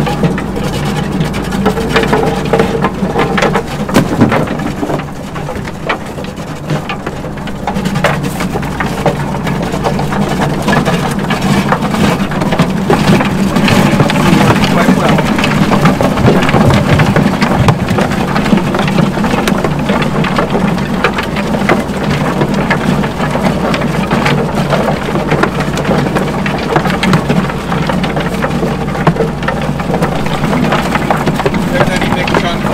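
Rotating-drum bait chopper driven by a hydraulic motor, grinding frozen bait: a dense, continuous clatter of crunching over a steady mechanical drone.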